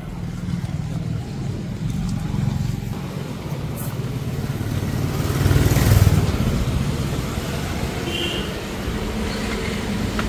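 Street traffic running steadily, with a motorcycle passing close by, loudest about six seconds in.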